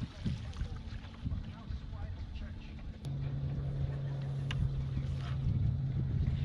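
Low wind rumble on a bass boat. About halfway through, a steady low electric hum from the boat's motor switches on and keeps running.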